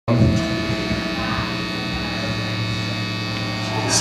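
Steady electrical hum and buzz from idle stage amplifiers, a constant drone with many overtones that does not change in level.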